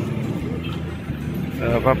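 Steady low engine hum of a vehicle running close by, with voices starting near the end.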